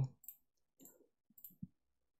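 A few faint computer mouse button clicks, the clearest about one and a half seconds in, as an image is saved through a file 'Save As' dialog.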